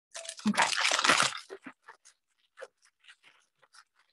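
Clear plastic disposable piping bag crinkling as it is handled: a dense burst of crackling for about the first second and a half, then scattered small crackles.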